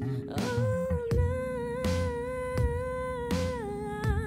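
A wordless sung note, hummed or vowel-sung, held for about three seconds and then sliding down a little near the end. Under it runs a looped backing of a bass line and drum hits about every three-quarters of a second.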